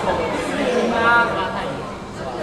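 People talking, with the speech loudest in the middle and fading near the end; no words come through clearly.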